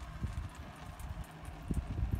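Homemade comfrey liquid feed being poured from a bottle into a plastic watering can, faint glugging and splashing with a few small irregular knocks.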